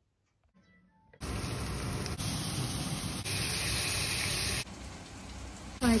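Near silence for about a second, then a loud, steady sizzle of potato strips frying in oil in a pan. It comes in short sections that change abruptly and is quieter near the end.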